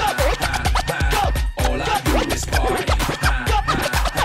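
Turntable scratching: a record sample pushed back and forth by hand and chopped on and off with the mixer fader, over a looping hip-hop party break with a heavy, steady kick beat. The scratches come as quick rising-and-falling sweeps in pitch, cut off sharply.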